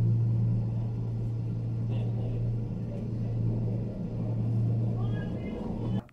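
Steady low hum and rumble inside a moving gondola cabin as it runs along its cable.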